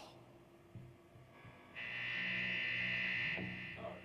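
Electric guitar amplifiers buzzing between songs: a steady low hum throughout, with a louder high buzz that comes in about a second and a half in and cuts off shortly before the end.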